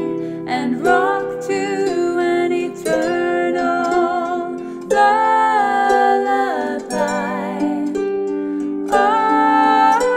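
A harp being plucked in a slow, gentle accompaniment under a woman's voice singing long, held notes with vibrato.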